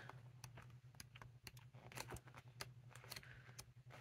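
Faint, irregular clicks and ticks of the heavy sheets of a 12x12 scrapbook paper pad being flipped one after another.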